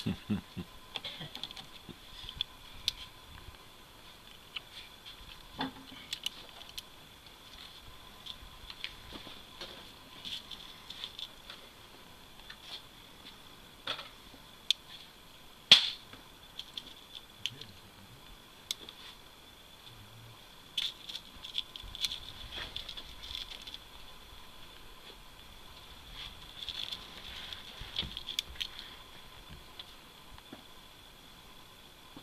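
Small metallic clicks and rattles of a Colt 1860 Army cap-and-ball revolver being handled while it is loaded, scattered and quiet, with one sharper click about 16 seconds in.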